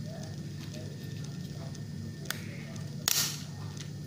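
The plastic latch of a GoPro Hero 6 frame mount being worked open by hand: light handling clicks, a sharp click a little past two seconds in and a louder snap a little after three seconds, over a steady low hum.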